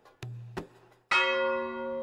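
A bell-like chime struck once about a second in, its several tones ringing on and slowly fading. Two short clicks come before it.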